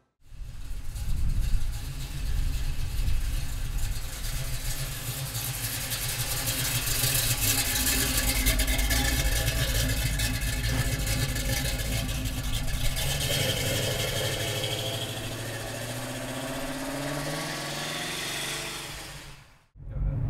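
The GM 350 cubic-inch V8 crate engine of a 1973 Chevrolet Camaro Z28, fed by a Holley four-barrel carburetor, running with its exhaust rumble. There is a short rise in revs about a second and a half in, and the engine note climbs slowly in pitch over the last several seconds.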